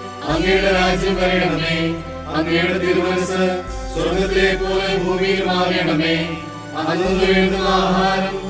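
Malayalam Christian devotional song for the Way of the Cross: slow, chant-like singing in phrases of about two seconds, over a sustained instrumental accompaniment with a low bass that changes note every few seconds.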